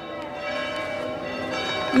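Church bells ringing, a cluster of steady overlapping tones that swell slightly through the pause in the speech.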